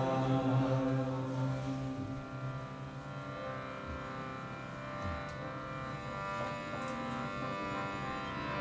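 Kirtan music: many steady held tones forming a sustained drone. It is louder in the first couple of seconds, then settles to a softer, even level.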